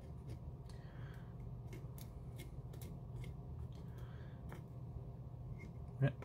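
Faint, irregular scratching and scraping of a small hand pick digging into a crumbly fossil dig block, over a steady low hum.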